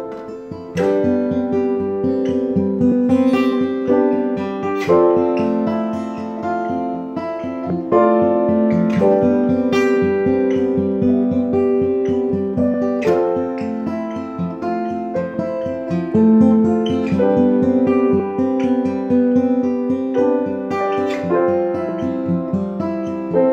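Acoustic guitar with a capo being picked and strummed together with piano in an instrumental passage of a slow song, without vocals.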